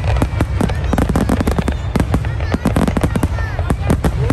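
Fireworks crackling: a dense, irregular run of sharp pops, several a second, with short whistling tones gliding up and down through them.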